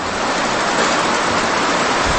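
A loud, steady rushing hiss with no pitch to it, fading up just before and holding level throughout.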